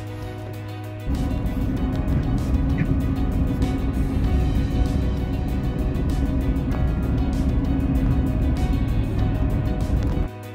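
Background music, joined about a second in by the steady low rumble of a GMC pickup truck driving on a wet road, heard from inside the cab.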